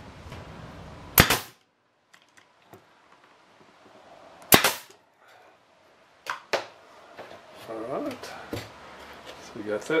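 Nail gun firing twice, a few seconds apart, driving nails into the boards of a small wooden box, each shot a sharp crack with a brief ring. Two lighter clicks follow a couple of seconds later.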